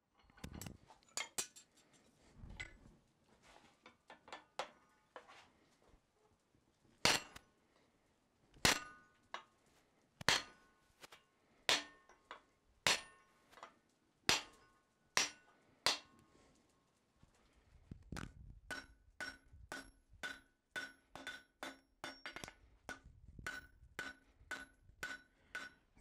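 A blacksmith's hand hammer striking hot steel on an anvil while forging and bending a vise jaw. It starts with a few scattered light taps, then heavy single blows about every second and a half, then quicker, lighter blows about two a second that ring with a metallic note.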